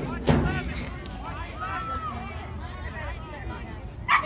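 Several voices of players and spectators shouting and calling out over each other at a youth football game. One loud, sharp shout comes just after the start.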